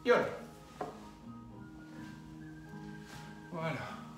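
Soft background music with steady sustained notes. It is broken by a sudden loud rush as a person rolls forward on an exercise mat onto his seat at the very start, and another shorter one about three and a half seconds in.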